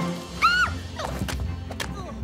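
Cartoon background music. About half a second in comes a short pitched sound that rises and falls, followed by several sharp splats as slingshot shots hit the treehouse's wooden wall.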